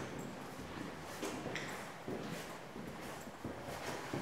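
Faint, irregular footsteps on a hard floor.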